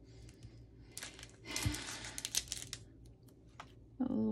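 Paper rustling with light clicks and taps as small paper flowers are handled and pressed onto card stock, busiest from about one to three seconds in.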